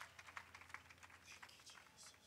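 Faint, scattered hand claps as applause dies away, over a low steady hum.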